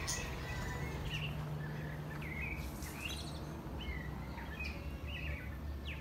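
Birdsong: a bird singing in short chirping notes, about two a second, over a steady low background hum.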